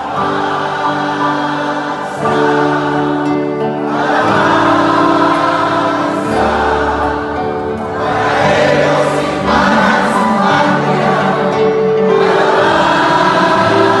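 A live folk song played on bass guitar, acoustic guitar and violin, with many voices singing together in a chorus, the crowd joining the singers.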